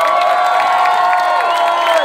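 A crowd cheering, many voices holding one long shout together, with hands clapping.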